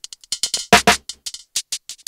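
A drum loop played back through Ableton Live's Texture warp mode: the granular algorithm breaks the hits into irregular, stuttering grains, giving a choppy, trippy result rather than clean drum transients.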